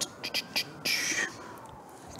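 A man muttering under his breath in a whisper, with a breathy hiss about a second in and a few short clicks, over a faint high tone that slowly rises and falls.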